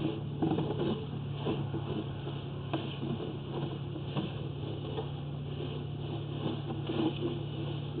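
Steady low mechanical hum with faint, irregular knocks and clicks while a sewer inspection camera on its push cable is drawn back through a cast iron sewer line.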